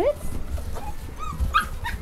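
English Cocker Spaniel puppies giving a few short, high-pitched whimpers, starting about halfway through.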